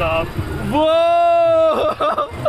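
A person's long, held 'oooh' shout at one steady pitch for about a second, sliding down at the end: a rider calling out on a moving Ferris wheel.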